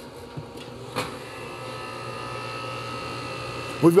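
Four-ton Goodman air-conditioner condensing unit starting up on a SureStart soft starter: a click about a second in, then a steady hum with several tones that slowly builds as the compressor and fan come up to speed.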